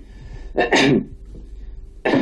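A short, breathy burst of laughter, a single laugh lasting under half a second, falling in pitch, about two-thirds of a second in.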